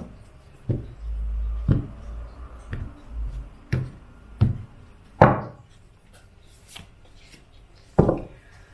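Hands handling tarot and oracle cards on a tabletop: about six short, separate taps and knocks spread over the first five seconds, the loudest near the five-second mark, with a low rumble about a second in.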